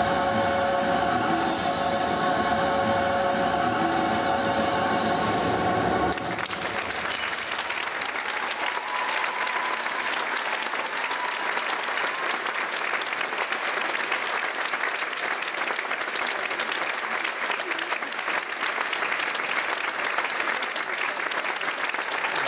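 Orchestral music with singing, playing back over an arena's speakers, stops abruptly about six seconds in. The arena audience then applauds steadily to the end.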